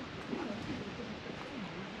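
Quiet outdoor background noise with a steady light hiss of wind on the microphone and no distinct event.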